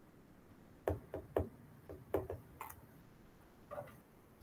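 A handful of irregular knocks and taps, about seven over three seconds, with the last two near the end.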